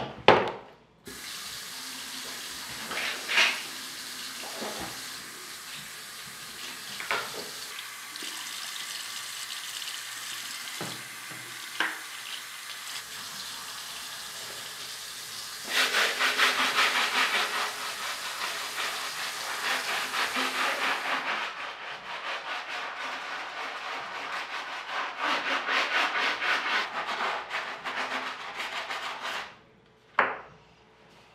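Tap water running into a bathroom sink, with a few knocks of a shoe and objects against the sink. Then, about halfway through, a brush scrubs a sneaker in rapid, louder strokes that stop suddenly just before the end.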